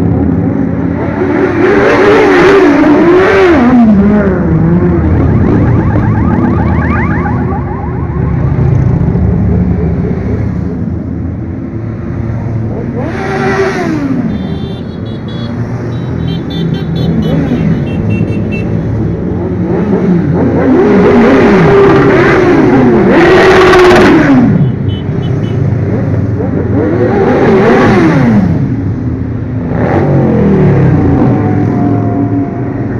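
A string of motorcycles riding past one after another, each engine note rising as it comes close and falling away as it passes, with the loudest passes about two, thirteen, twenty-two and twenty-eight seconds in. A steady low rumble runs beneath them.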